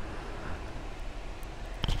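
Faint steady hiss and low rumble from a close wired microphone, with a couple of soft clicks near the end.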